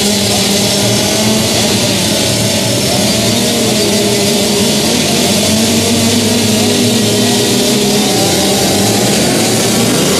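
A pack of junior motocross bikes running and revving together on the start line, a steady engine din with several wavering pitches.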